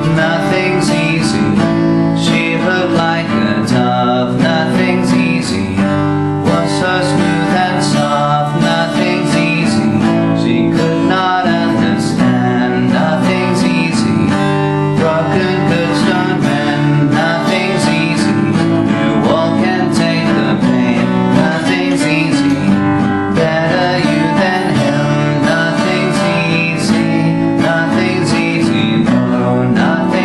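Acoustic guitar strummed in a steady rhythm, chords ringing on.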